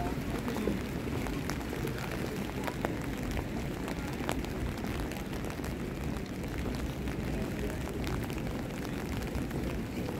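Outdoor city street ambience in the rain: a steady low rumble, with scattered faint ticks and the voices of passers-by.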